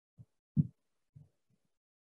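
A few soft, low thumps at uneven intervals, from objects being handled close to the microphone.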